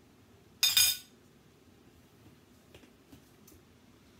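A metal fork clinks and scrapes against a plate in one short, loud clatter with a ringing tone about half a second in, followed by a few faint taps.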